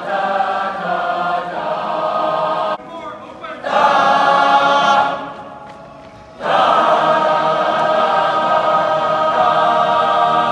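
A large group of marching band members singing a chorale in harmony: long held chords, with a short break a little under three seconds in and a fade and pause around five to six seconds in before the next chord.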